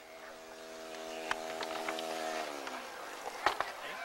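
A small model airplane engine buzzing at a steady pitch, then dropping in pitch and fading a little past halfway. A sharp knock sounds near the end.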